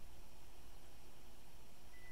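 Steady low background hiss and hum of a small room, with no other sound.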